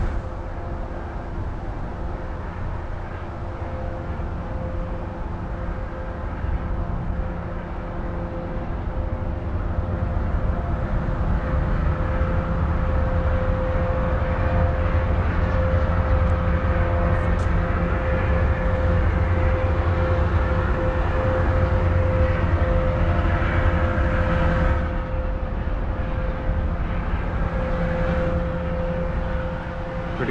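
River towboat's diesel engines droning steadily as it pushes barges past, growing louder through the middle and easing off a little about 25 seconds in.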